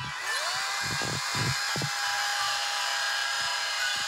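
SKIL battery-powered electric chainsaw spinning up and running, the motor's whine rising in pitch just after the start and then holding steady. A few low thumps come in the first two seconds.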